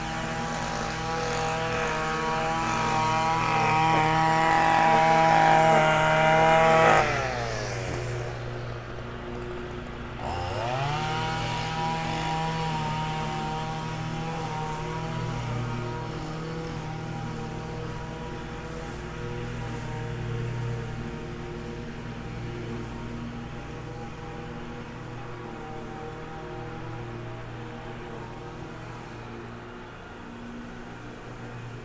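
Small engine of a handheld power tool running at high speed and growing louder, then winding down about seven seconds in; about three seconds later it spins back up to the same pitch and runs steadily, slowly getting fainter.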